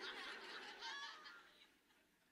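Faint audience laughter after a punchline, dying away after about a second into near silence.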